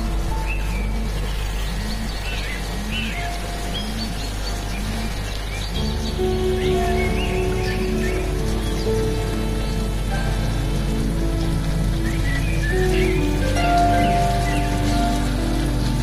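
A smartphone alarm ringtone playing a gentle melody with bird chirps over it. The alarm tone fills out and gets louder about six seconds in.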